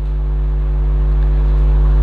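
Steady electrical mains hum with a stack of overtones, loud and unchanging: a hum picked up in the recording chain, which runs under the lecturer's voice as well.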